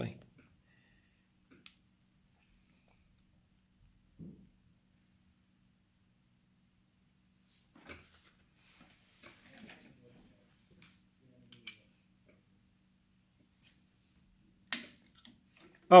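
Near silence with a faint steady hum, broken by a few faint, scattered clicks and knocks from the quill feed parts of a Bridgeport milling machine being worked by hand. A man's voice breaks in near the end.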